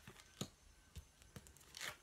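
Faint handling of tarot cards: a few light clicks and a short rustle near the end.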